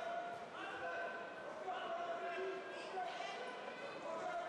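Several voices calling and shouting over one another, echoing in a large sports hall, with held, drawn-out calls among them.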